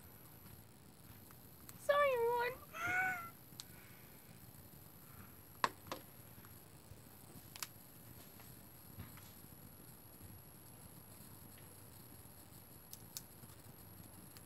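Two short, high, wavering meow-like calls about two and three seconds in, followed by a few faint light clicks.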